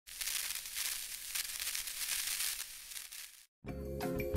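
A high hissing noise with irregular crackle, cut off suddenly; after a brief silence, intro music starts near the end.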